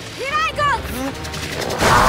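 A boy grunting and straining in short effortful cries, then near the end a sudden loud rushing burst as a thrown blade flies in, over background music.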